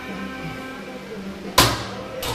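Background music playing, with one sharp loud clank about one and a half seconds in from the reverse hyper machine as its weighted swing arm is set moving.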